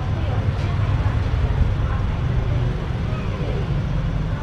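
A steady low rumble of background noise with faint voices in it.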